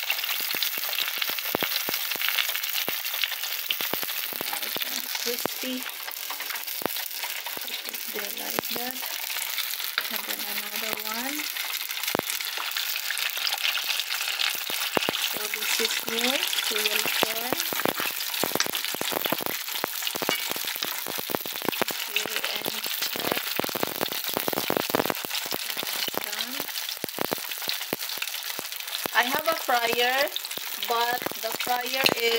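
Spring rolls frying in oil over low heat: a steady sizzle with many sharp crackles.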